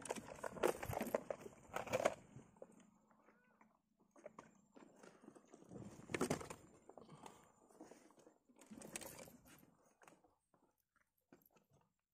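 Scattered knocks and rustles of fishing tackle being handled in a wooden boat, with louder bursts in the first two seconds and again about six and nine seconds in.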